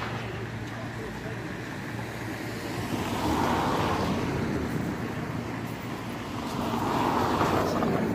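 Street traffic: two vehicles pass by, one about three seconds in and another about seven seconds in, each swelling and then fading.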